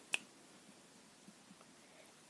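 A single sharp click just after the start, then near silence: room tone.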